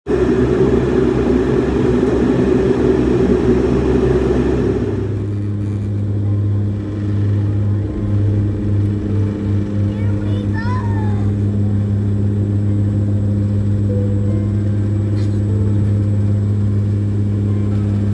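Turboprop airliner's engines and propellers heard from inside the cabin during takeoff. A loud rushing noise lasts about five seconds, then settles into a steady low propeller drone.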